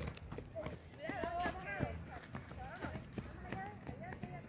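Children's voices calling and chattering, loudest about a second in, with scattered light taps.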